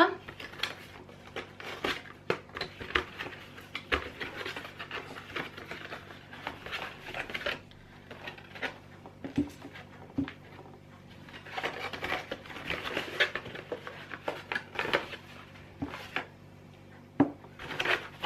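Cardboard box of children's paint pots being handled and opened: rustling and scraping of card and paper, with many small clicks and knocks as plastic paint pots are taken out and set down on the paper-covered table.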